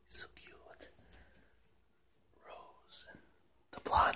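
A person whispering in short, breathy phrases, with pauses between them.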